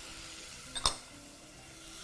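Oil and spice seeds sizzling faintly in a pot, with a single sharp click a little under a second in.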